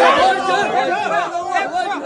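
Several men's voices talking over one another in a crowded room.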